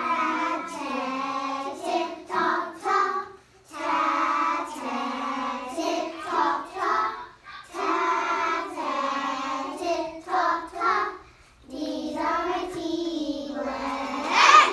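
A class of young children chanting the phonics syllables 'ta, te, ti, to, tu' together in a sing-song unison, phrase after phrase with short breaks between.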